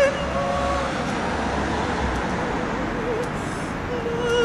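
City street traffic noise, with a low vehicle rumble in the first two seconds, under a woman's voice singing soft, faint held notes with vibrato between louder phrases of the song.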